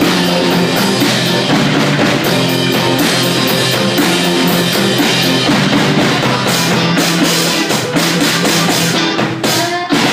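A small live rock band plays with drum kit and electric guitars: a steady drum beat under guitar lines. The sound briefly drops away just before the end.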